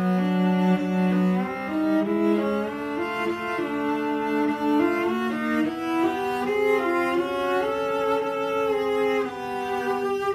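Solo cello, bowed, playing a slow line of held notes that climbs gradually in pitch.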